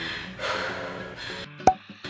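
A woman breathing hard after exercise, over faint background music; near the end the sound cuts out with a single sharp click.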